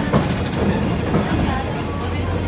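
Running noise of a moving train heard from inside an open-sided trolley car: a steady rumble of wheels on rail, with a couple of sharp clacks near the start.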